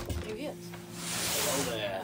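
A person's voice: a short murmured sound, then a long breathy hiss from about a second in.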